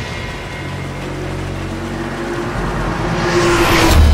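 Car engine sound effect approaching and growing louder, building to a rush as the car comes out of the tunnel near the end.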